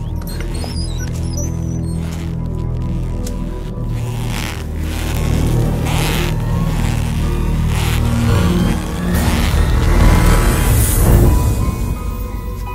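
Suspenseful film score: low, sustained drones with several swelling rushes of noise, the loudest about ten seconds in.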